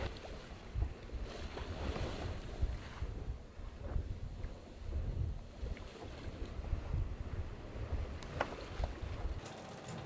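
Wind buffeting the microphone and water rushing along the hull of a sailboat under way at speed, a steady rough rumble with a couple of sharp knocks about eight seconds in. The rumble cuts off suddenly near the end.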